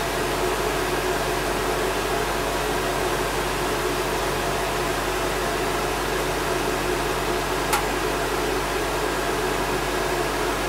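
Old Soviet-era wall-mounted electric hand dryer running steadily, its fan blowing hot air with a constant motor hum. A single brief click about three quarters of the way through.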